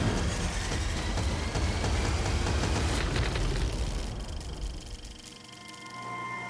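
Deep rumbling sound-design effect under music, the low rumble dying away about five seconds in and leaving a held drone.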